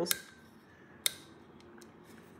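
Light handling clicks from fingers on a small desktop DAC's case and controls: one sharp click about a second in, with fainter ticks near the start and near the end.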